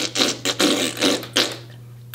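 A person blowing a raspberry, the tongue and lips flapping in a run of rough, spluttering pulses, stopping about three-quarters of the way in.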